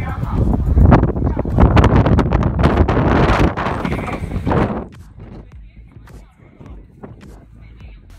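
Strong wind buffeting the microphone, with footsteps knocking on the bridge deck and people's voices around. After about five seconds the wind noise drops away, leaving lighter scattered knocks.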